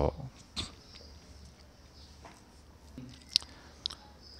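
A pause in speech: a low, steady room hum with a few faint, short clicks, the sharpest about three and a half seconds in.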